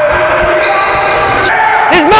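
A basketball bouncing on the hardwood floor of a gym during play, mixed with players' voices and the echo of the large hall.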